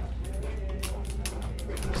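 Light, irregular metallic clicks and jingles from a Great Dane's chain slip collar and leash clip as the dog shifts and settles into a sit.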